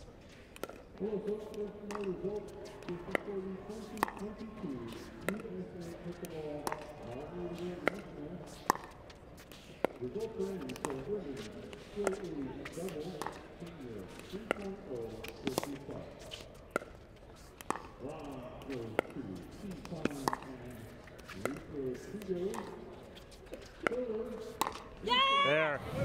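Pickleball rally: paddles striking the plastic ball in sharp pops about once a second, over a murmur of voices from the venue. Close-up speech comes in near the end.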